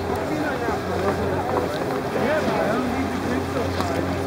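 A steady low machine hum, mixed with wind noise on the microphone and distant, indistinct voices.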